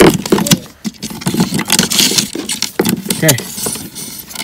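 Rustling and clicking handling noise, as cables and loose attic insulation are moved about close to the microphone, with short bits of talk and an "okay" near the end.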